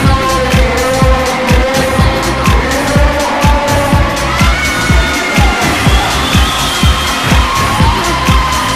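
Music with a steady, fast, thumping beat and sustained tones. A few rising, gliding tones sound over it about four seconds in and again near the end.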